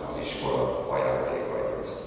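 A man's voice speaking over a PA microphone, carrying in a large hall.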